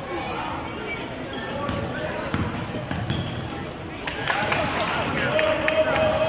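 Basketball game sounds in a gym: crowd voices and shouts, a basketball bouncing on the hardwood court, and short sneaker squeaks, getting louder near the end as play moves upcourt.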